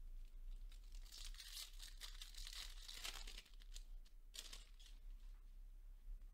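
Faint tearing and crinkling of a foil trading-card pack wrapper being opened and handled, with a short louder rustle near the end.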